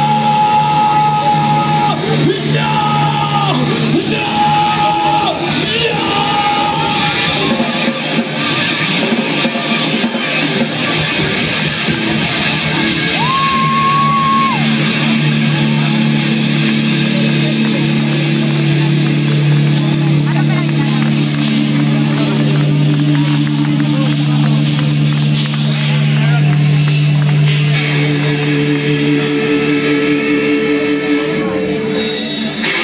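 Rock band playing live with electric guitars and drums. Long held high notes come several times in the first few seconds and once more about halfway through, then low notes are held through the second half.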